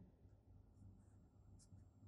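Near silence: room tone, with a faint low hum.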